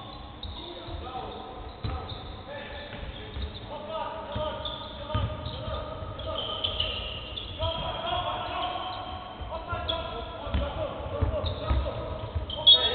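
Basketball bouncing on a hardwood court, repeated low thuds, with men's voices calling out across the court.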